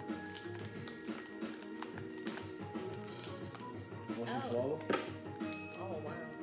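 Background music with steady held notes. A voice exclaims "oh wow" about two thirds of the way in, and a single sharp tap follows just after.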